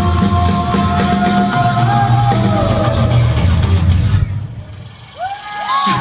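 Live rock band playing through the theatre PA, with held notes over a steady low beat. About four seconds in the band drops out to a brief lull, and a rising sung "So" brings the song back in just before the end.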